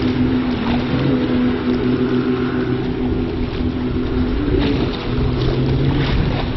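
Outboard motor of an RNLI inflatable inshore lifeboat running at speed, a steady drone, over a rush of wind.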